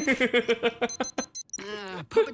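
Digital wristwatch beeping: a quick run of short, high beeps about a second in, with voices just before and after.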